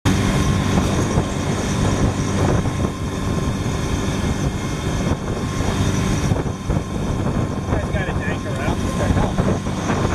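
Motorboat engine running steadily under way, a continuous low drone mixed with rushing noise. Voices come in briefly near the end.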